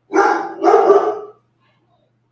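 A dog barking twice, loud and close to the microphone.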